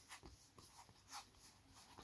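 Faint sliding and rubbing of Yu-Gi-Oh! trading cards thumbed one over another by hand, with a couple of soft flicks, the clearest about a second in.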